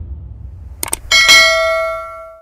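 Subscribe-button animation sound effect: two quick clicks, then another click and a bright bell chime that rings out and fades, over a low rumble dying away.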